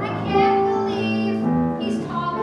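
A high voice singing sustained notes with vibrato over live piano accompaniment, a show tune from a stage musical.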